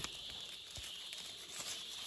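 Faint rustling and crumbling of loose, dry soil and roots as hands pull up a wild ginger plant and break the clump of earth apart, with scattered small crackles. A steady high hiss runs underneath.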